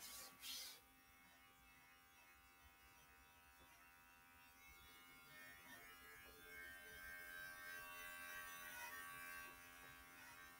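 Near silence: faint steady room hum, with a brief soft rustle about half a second in.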